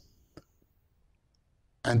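Near silence in a pause of a man's speech, broken by a single short, faint click about half a second in; his voice resumes at the very end.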